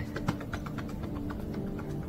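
Light, quick, even tapping, about six or seven taps a second, over faint background music.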